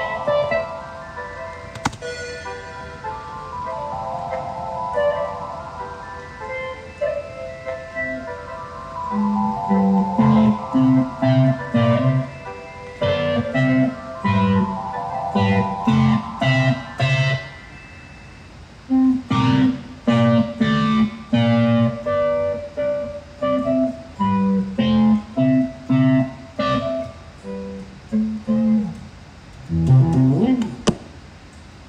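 Stratocaster-style electric guitar played. It opens with a picked single-note melody, then moves about a third of the way in to loud, short, choppy chords low on the neck in a steady rhythm. The chords break off briefly about two-thirds of the way through, then resume.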